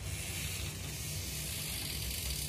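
Quiet room background: a steady low hum with an even hiss above it, and no distinct events.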